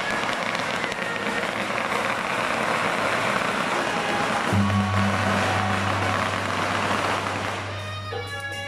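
A string of firecrackers going off in rapid, continuous crackling; a steady low hum comes in about halfway through.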